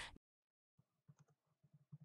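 Faint computer keyboard keystrokes, a quick run of soft clicks starting about a second in, over near silence.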